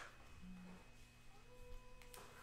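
Near silence: room tone, with only a faint short hum and a faint thin tone.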